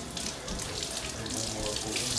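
Water running steadily from a kitchen faucet into a sink.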